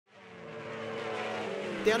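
Superbike racing motorcycles running at speed down the track, a steady engine note with several pitched tones held nearly level. The sound fades in over the first half second.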